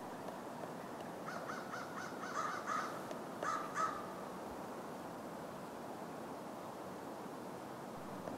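Pileated woodpecker calling: a quick run of six short notes, about three a second, then two more after a brief pause.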